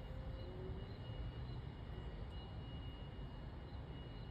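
Quiet outdoor background: a steady low rumble with a faint, steady high-pitched tone running through it.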